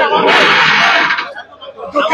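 A loud, harsh shout lasting about a second amid a crowd of men's voices, then a brief lull.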